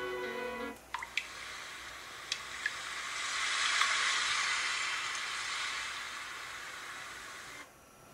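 Music previews from a phone app's track picker. A short plucked-string tune cuts off about a second in. Then a noisy, water-like wash with a few drip-like clicks swells to a peak midway and fades out just before the end.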